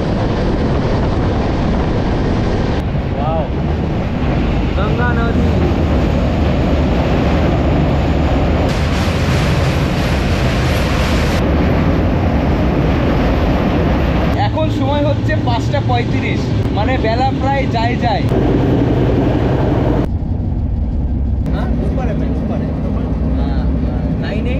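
Wind rushing over the microphone and the steady rumble of a moving passenger train, recorded out of the open side of the coach at speed. A louder, hissier rush comes a little before halfway, and the sound turns duller near the end.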